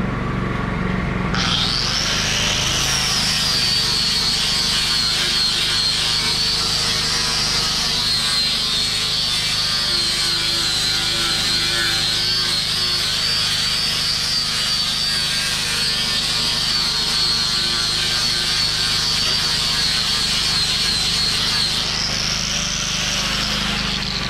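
Angle grinder with a 36-grit flap disc starting up about a second in and grinding an oak board for bulk stock removal: a steady high whine that rises briefly at start-up, settles lower under load, then rises again near the end as the load comes off and fades.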